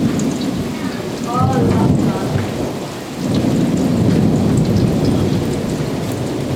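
Thunder rumbling in rolling waves: a swell at the start, another about a second and a half in, and a longer roll from about three seconds in, over a steady hiss of rain.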